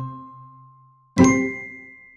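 The last notes of a musical jingle ring out and fade, then, a little over a second in, a single bell-like chime is struck once and rings away slowly: the closing sting of the advert's music.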